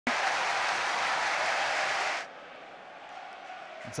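Football stadium crowd applauding loudly, cutting off abruptly a little over two seconds in and leaving a much quieter crowd hum.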